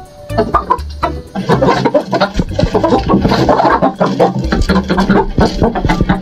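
Background music with a chicken clucking over it, the sound growing busier about a second and a half in.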